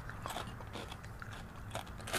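A person biting and chewing a crispy fried crappie fillet, with faint crunches.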